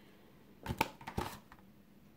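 A few brief, faint rustles and clicks of handling in a quiet room: a cluster about two-thirds of a second in and another just past one second.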